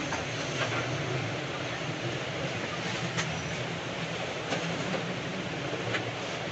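Steady low hum and hiss of background machinery, with a faint click or two near the middle.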